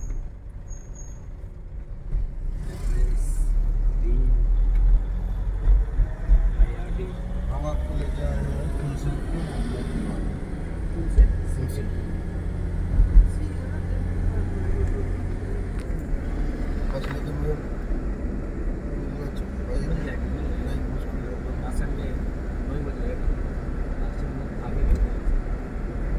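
Road and engine noise inside a moving car's cabin: a steady low rumble, with a few brief louder knocks as the car rides over bumps.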